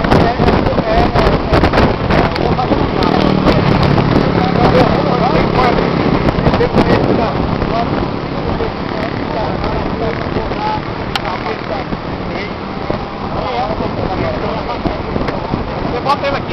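Buzz of an RC Piper Cub model airplane's engine flying overhead, strongest a few seconds in and then fading, under wind on the microphone and indistinct voices.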